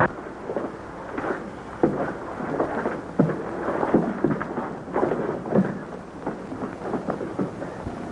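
A scuffle on a bed: irregular thumps and rustling of bodies and bedclothes, with short grunts, over the hiss of an old film soundtrack.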